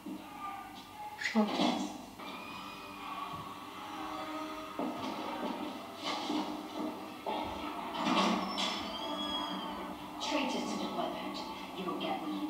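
Audio of a TV drama battle scene: soldiers shouting in short bursts over a steady music score.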